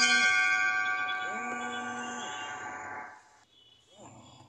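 A metal bell struck once, ringing with several clear overtones and fading out over about three seconds. A low, steady humming tone sounds briefly under it twice.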